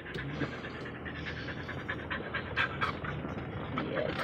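A dog panting steadily close by, a quick run of short breaths.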